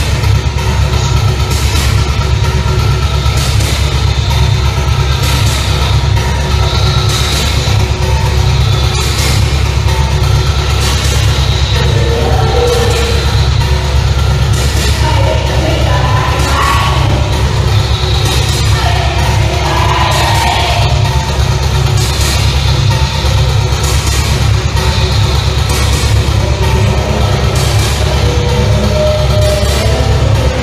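Loud live industrial noise music: a heavy, steady synthesizer bass drone with a noisy drum-machine stroke about every second and a half. Amplified violin lines waver over it in the middle.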